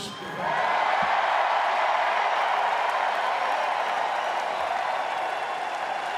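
Large crowd applauding and cheering, a steady din of clapping and voices that builds within the first half-second and eases slightly toward the end.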